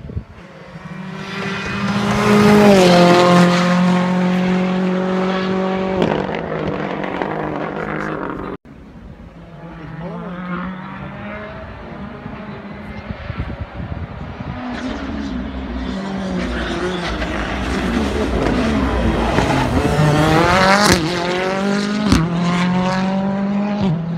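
Rally car's engine at full throttle, coming closer with a drop in pitch at each upshift and a steady high note as it passes close by. After a sudden break the car is heard further off, the engine note rising and falling through gear changes, with a couple of sharp pops near the end.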